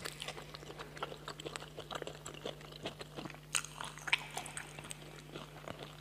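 Close-miked chewing and biting of roasted dog meat: a string of irregular wet mouth clicks and small crunches, the sharpest snaps about three and a half and four seconds in, over a steady low hum.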